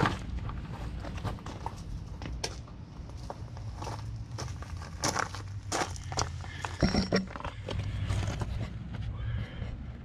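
Low steady hum of the hot tub's pump running after the Gecko spa pack is powered up, growing a little stronger about three to four seconds in, with scattered light clicks and knocks throughout.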